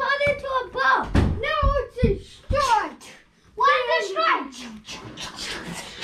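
Children's high-pitched voices yelling and making wordless exclamations in play, with a few low thumps about one to two and a half seconds in.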